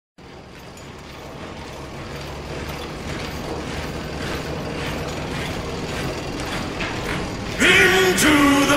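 Mechanical rattling and clanking fades in and grows steadily louder over a low hum: a song intro's machinery sound effect. Just before the end, a man's shout begins.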